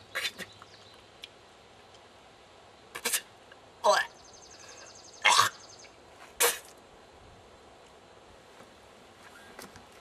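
A man's short wordless vocal noises, about five of them spread a second or so apart with quiet in between, some bending in pitch. They are his reaction to blackflies getting into his mouth and nose.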